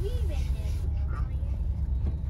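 Steady low rumble of a car's engine and road noise heard from inside the cabin as it drives slowly, with a voice briefly near the start.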